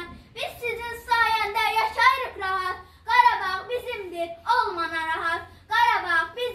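A young girl's voice reciting a poem aloud in Azerbaijani in a high, half-sung chanting voice, with short pauses between lines.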